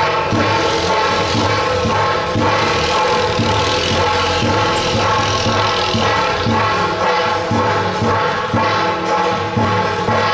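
Temple procession music at a steady level: held, sustained melody notes over a regular beat of about two strokes a second, with brass hand cymbals played by a cymbal troupe.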